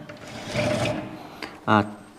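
Glass sliding door of a metal-framed display cabinet being slid open along its track: a rough scraping rub lasting about a second and a half, with a brief squeal partway through.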